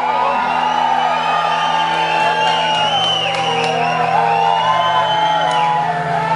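Live band music with a steady held chord, under a crowd whooping and shouting.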